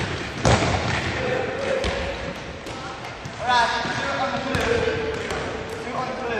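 Jumping stilts (powerbocks) landing on a hard hall floor, with one loud thud about half a second in and softer thumps after it, and voices calling out.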